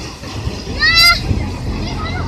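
A child's brief, high-pitched shriek about a second in, over the low rush of surf on the beach.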